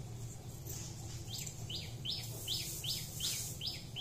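A small bird chirping in a quick series of short, high, falling notes, about two or three a second, starting about a second and a half in, over a steady low hum.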